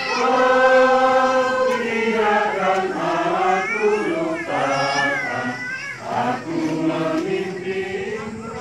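A congregation singing together in unison, holding long notes that glide from one to the next.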